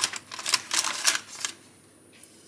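A metal fork pressing and tapping along the edges of stiff, partly frozen puff pastry on a parchment-lined baking tray: a quick run of light clicks that stops about a second and a half in.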